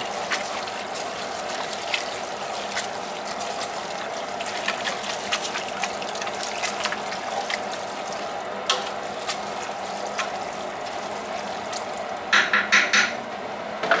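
A spoon stirring a thick chili mixture of ground beef and diced tomatoes in a large stainless steel pot, with wet sloshing and scattered scrapes and clicks against the metal over a steady background hum. Near the end comes a quick run of four or five sharper knocks.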